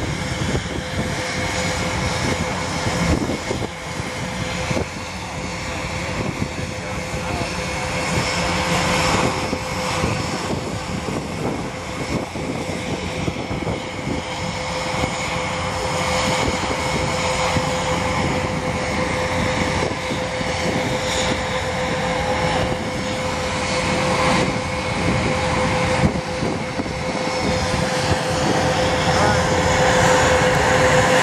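Airbus A380 airliner's four jet engines during a display pass, a steady rushing noise with a steady whine through it. It grows gradually louder as the aircraft comes nearer and overhead.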